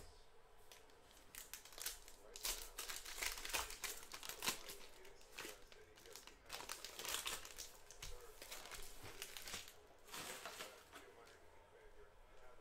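Foil wrapper of a trading-card pack crinkling and tearing as it is opened and handled, in irregular bursts of crackle.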